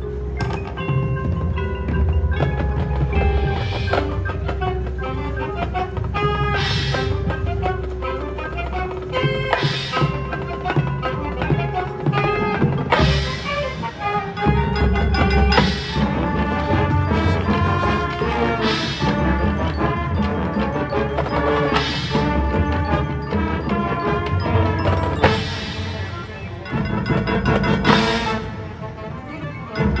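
High school marching band playing its competition field show, with front-ensemble mallet percussion such as marimba among the winds and brass. Loud accents come about every three seconds.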